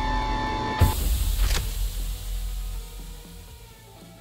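Sliding-door transition sound effect: a steady tone that cuts off with a loud clang just under a second in as the doors shut, its ring dying away over the next two seconds, with soft music underneath.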